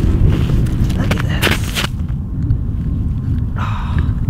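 Wind buffeting the microphone in a steady low rumble. A brief hiss of about half a second comes about a second and a half in.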